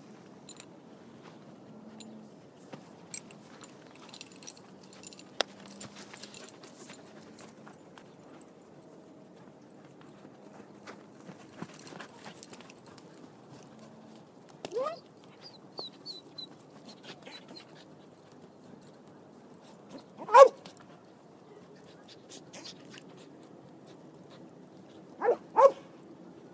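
Several short yelping calls, each rising quickly in pitch, over faint scattered clicks and rustling. The loudest comes about twenty seconds in, and a quick pair comes near the end.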